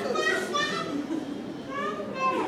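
Children's high-pitched voices chattering.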